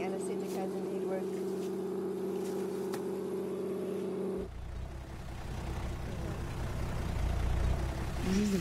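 Steady engine hum holding one constant pitch, which cuts off abruptly a little past halfway and gives way to a low rumble.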